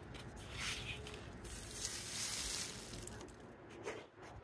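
Powdered rock phosphate fertilizer being shaken out and sprinkled around the base of a shrub: a soft hiss that swells twice, about half a second in and again past the two-second mark.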